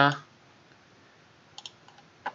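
A pair of quick computer mouse clicks about one and a half seconds in, set against quiet room tone.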